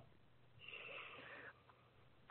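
A faint breath, a person inhaling once for about a second, a little way in, before speaking; otherwise near silence.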